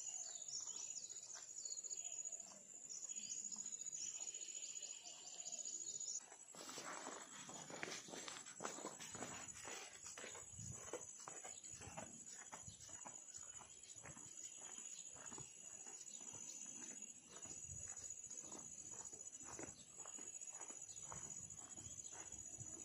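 Footsteps crunching on a dirt trail, about two steps a second, over a steady high drone of insects. Before a cut about six seconds in, birds chirp over the insect drone and there are no steps.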